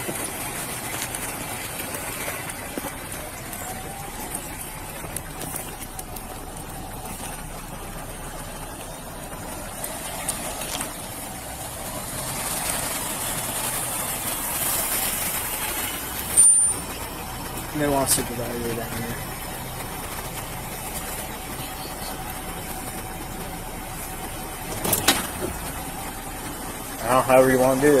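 Steady noise of vehicles idling at a roadside traffic stop, with police cruisers running, swelling midway. A sharp click comes about 16 seconds in, with brief voices just after it and again at the end.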